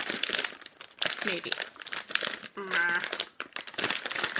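A crinkly plastic snack bag crackling and rustling in the hands as it is pulled and twisted in an attempt to tear it open.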